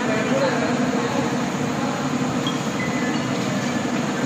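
A steady, fairly loud mechanical din in a large factory hall, with indistinct voices talking over it.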